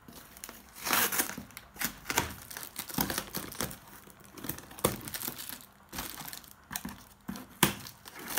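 Clear plastic stretch wrap and tape on a cardboard box being pulled and cut open with scissors: irregular bursts of crinkling and tearing plastic, with a sharp click near the end.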